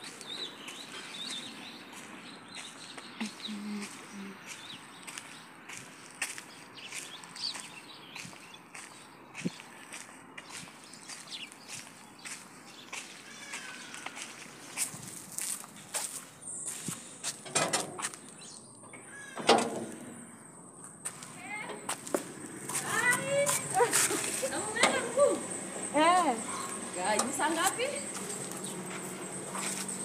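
Footsteps on a paved path, with a few bird chirps early on. From about halfway there is a steady high-pitched tone, and in the last several seconds voices.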